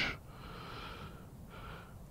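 Soft breathing close to the microphone: two quiet breaths, the first about a second long, the second shorter near the end.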